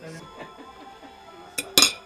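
Metal cutlery clinking against a ceramic serving plate: a light clink and then a louder one near the end, over background music and faint chatter.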